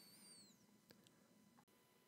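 Near silence: room tone, with one faint, brief high squeak right at the start.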